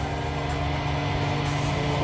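Hair dryer running on its low setting: a steady hum of the motor and fan over the rush of blown air.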